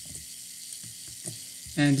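Small DC gear motor running steadily at low speed, a continuous whirring hiss, with a few faint clicks.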